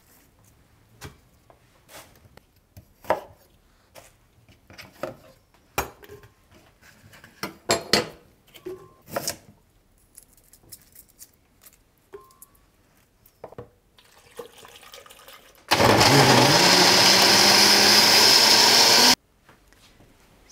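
Scattered light knocks and taps of kitchen handling on a wooden cutting board and countertop. Then a countertop blender runs loudly for about three and a half seconds, its motor pitch climbing as it spins up, blending a jar of vegetables, fruit and liquid. It cuts off abruptly.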